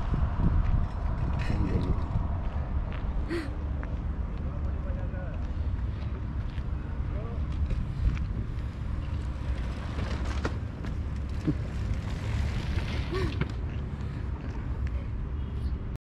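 Outdoor ambience dominated by a low, uneven wind rumble on the microphone, with a few faint, short voice-like calls in the distance.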